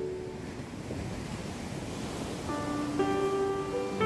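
Ocean surf washing in steadily, heard in a gap between pieces of music. A new piece of soft instrumental music enters about two and a half seconds in with held notes, growing louder near the end.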